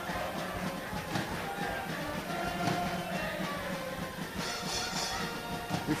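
Football stadium crowd noise, with supporters singing in the stands heard faintly.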